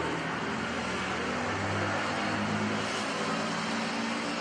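Steady low hum under an even hiss, with a low tone swelling slightly in the middle: background room noise.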